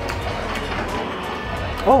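Dining-room background: music with people talking at other tables, a steady hum underneath. A man's voice says "oh" near the end.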